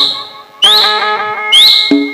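Live Rai folk music: sustained harmonium notes over dholak drum strokes, with repeating upward-swooping phrases. The music drops away briefly just after the start, then comes back in.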